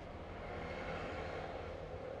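A steady, distant engine drone with a faint hum, like outdoor street noise.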